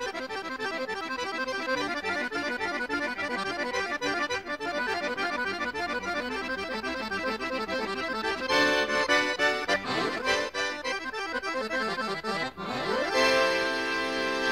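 Accordion playing a fast run of notes, with held chords about eight and a half seconds in and again near the end.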